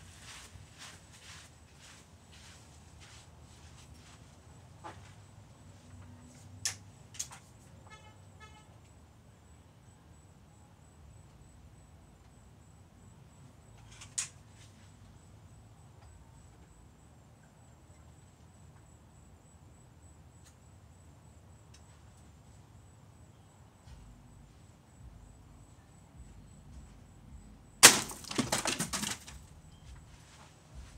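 An airgun shot near the end: a single sharp crack as the pellet hits the row of plastic water bottles, then about a second of bottles clattering as they are knocked over. A few faint sharp clicks come earlier.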